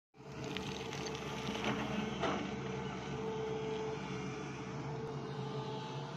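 Sany hydraulic crawler excavator's diesel engine running steadily as the boom and arm move, with a couple of brief knocks around two seconds in.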